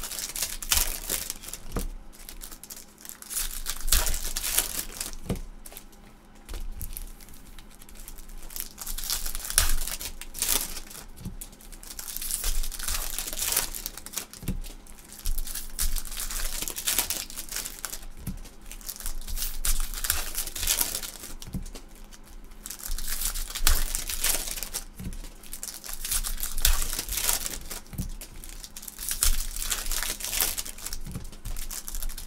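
Foil trading-card pack wrappers crinkling and rustling in repeated irregular bursts as they are handled, torn open and crumpled, with a few light clicks among them.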